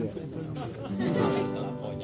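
Acoustic guitar strumming chords, with voices over it.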